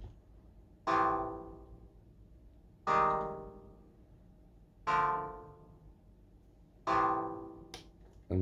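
Arturia MicroFreak synthesizer in paraphonic mode, its arpeggiator repeating a held chord at a slow time division: four plucked chords about two seconds apart, each starting sharply and dying away.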